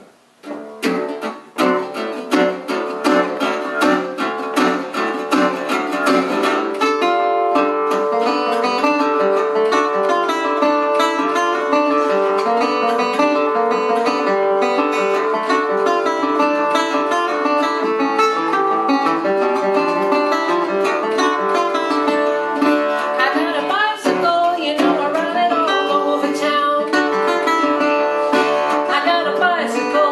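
Steel-bodied resonator guitar played fingerstyle: a blues intro that starts with separate picked notes about a second in and soon fills out into a steady, busy rhythm of bass and melody lines.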